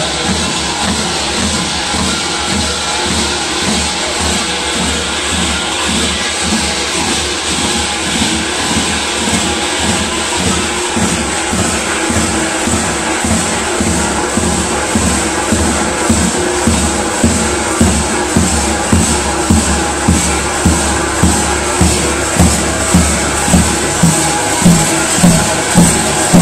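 A tapan (large double-headed folk drum) beating a steady rhythm of about two strokes a second, growing louder toward the end, over a continuous jangle of kukeri bells.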